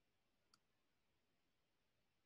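Near silence with a faint hiss, broken by one short faint click about half a second in.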